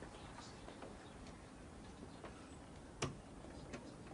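Quiet room tone with a few faint, irregularly spaced clicks and one sharper click about three seconds in.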